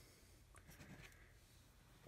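Near silence, with faint, light scratching from a small applicator brush working weathering powder.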